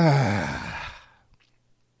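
A man's long, voiced sigh that falls in pitch and fades out about a second in, followed by quiet with a faint low hum.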